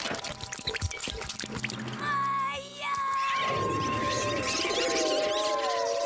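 Cartoon soundtrack music and sound effects: a quick run of clattering knocks for the first two seconds, then held tones that slowly slide downward in pitch.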